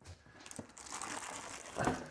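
Clear plastic bag around a boxed portable power station crinkling and rustling as it is lifted out of a cardboard box, with a brief louder sound near the end.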